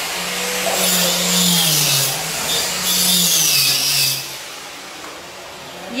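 Electric power tool motor running with a loud hissing grind, its pitch sagging twice as if under load, then dying away about four seconds in.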